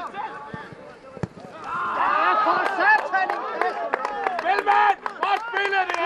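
Men shouting and calling out on a football pitch during play, several voices at once, growing loud about two seconds in, with a few sharp knocks among them.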